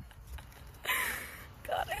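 A short breathy gasp or exhale from a person about a second in, followed near the end by the start of speech.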